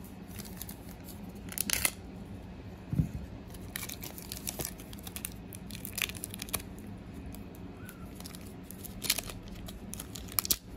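Foil wrapper of a trading card pack crinkling and tearing as it is pulled open by hand, in irregular crackly bursts. There is a dull knock about three seconds in.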